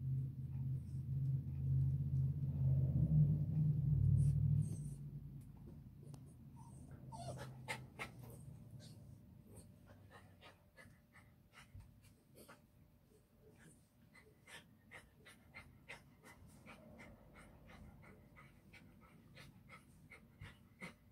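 A low hum that fades out about five seconds in, followed by a dog panting, short quick breaths a few times a second.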